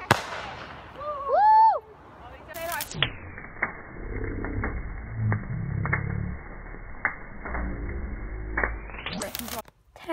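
A single firework bang, followed a second later by a loud shouted cry. Then the burning bonfire crackles with scattered sharp pops over a low rumble, sounding muffled.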